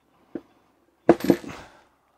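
A sharp metallic crack about a second in, with a brief ringing tail, as the seized drill chuck breaks loose on the drill's spindle thread under a large ratchet. It is preceded by a small click of the tools.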